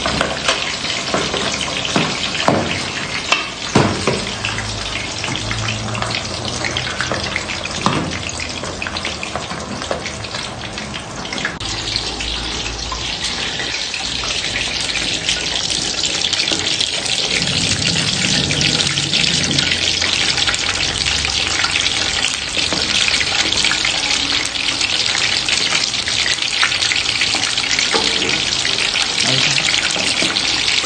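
Pork hock deep-frying in a pan of hot oil: a steady sizzle that grows brighter and a little louder about halfway through. A few sharp knocks come in the first few seconds.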